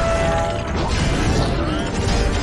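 Action-film sound effects, metal creaking and grinding with crashing debris, mixed with a music score. The sound comes in suddenly just before the start and stays loud throughout.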